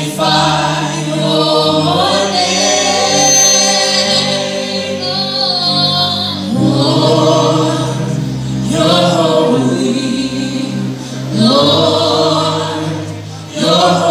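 Live gospel worship song: a small choir of singers through microphones, with amplified keyboard accompaniment holding sustained low notes that change every few seconds.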